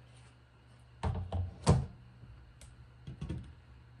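A few knocks about a second in, then one sharp, louder thump, followed by scattered light clicks.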